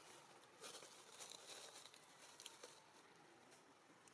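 Near silence: faint outdoor background hiss with a few soft, brief ticks.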